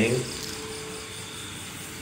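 Quiet outdoor night background: a faint steady hum with insects chirping faintly.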